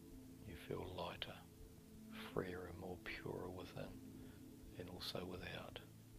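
A voice whispering four short phrases over soft background music of sustained, steady tones.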